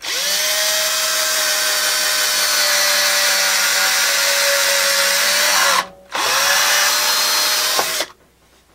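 Cordless drill running at steady speed as it bores a small pilot hole through a three-quarter-inch plywood board. It stops briefly about six seconds in and starts again for a second, shorter run.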